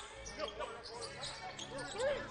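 Basketball being dribbled on a hardwood court, with faint voices in the arena.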